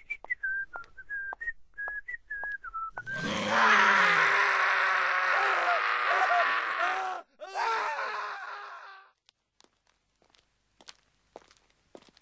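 A cartoon man whistles a jaunty tune over light footstep ticks. About three seconds in it breaks into a long, loud scream of pain mixed with a dog snarling as the dog bites him, cut briefly once and then fading. Near the end only a few soft footsteps.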